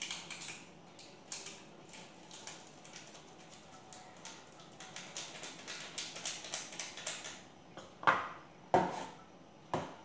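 Plastic seasoning sachets crinkling and rustling in the hands as they are torn open and emptied, with many small crisp clicks, then three louder sharp knocks near the end.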